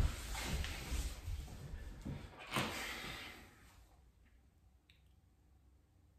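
A thump on the wooden floor as a man pushes up from a push-up set, then about three seconds of clothing rustle and breathing that fades out.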